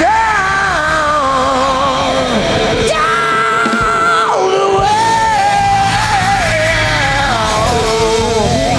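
Live rock band playing: a male singer holds long, wavering high notes over drums and bass. The low end briefly thins out in the middle.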